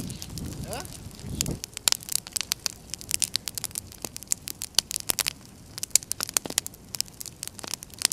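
A bonfire of painted canvases and their wooden frames crackling, with dense irregular snaps and pops throughout.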